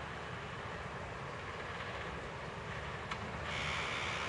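Steady distant city road traffic, heard as a low rumble and hiss, with a higher hiss growing louder about three and a half seconds in.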